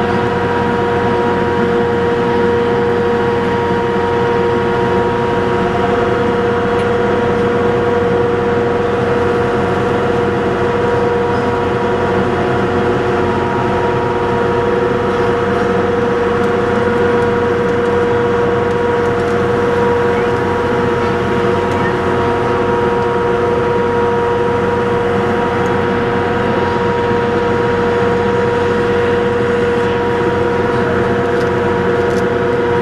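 A small boat's motor running steadily under way, a constant loud drone with a steady hum.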